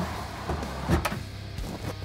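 Rackmount computer chassis sliding back into its rack on its rails, with a sharp knock just under a second in as it goes home.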